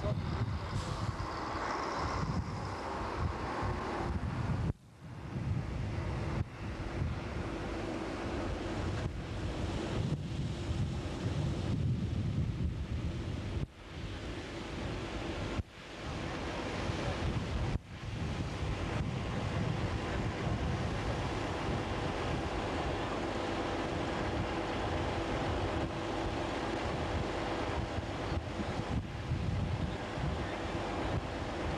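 Strong wind blowing across the camcorder microphone, over surf breaking on a rocky shore. The sound drops out briefly four times in the first twenty seconds.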